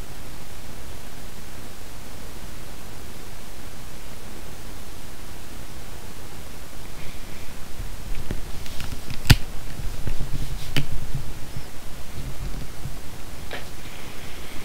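Steady hiss of the recording microphone. In the second half come a few sharp clicks, such as computer mouse clicks, with some low bumps.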